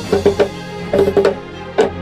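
Small Garífuna hand drum played with bare hands: irregular sharp strokes on the skin head, each with a short, fairly high ring, a sound called "un poco fino" (rather thin and fine).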